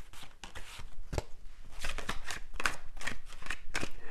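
A tarot deck being shuffled by hand: a run of quick card clicks and flicks that grows denser in the second half.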